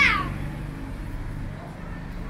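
A high-pitched cry, falling in pitch, fades out just after the start, leaving the steady low rumble of passing traffic on a city street.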